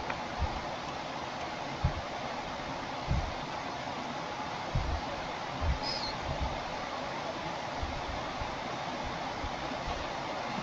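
Steady faint hiss with about six soft, short low thumps scattered through it, from typing into a form and clicking a mouse at a desk.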